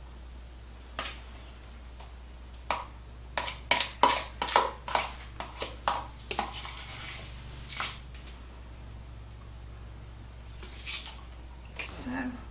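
A spoon tapping and scraping against a small bowl as thick sour cream and ranch dressing is scooped out and dolloped onto a layered salad: a quick run of clicks over several seconds, then one more near the end.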